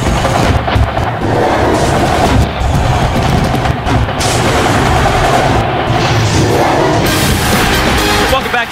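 Loud television sports-broadcast theme music for a program bumper, dense and continuous with a heavy low end.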